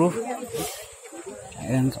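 A man's voice speaking in short phrases, with a brief high hiss about half a second in and a quieter gap before the voice resumes near the end.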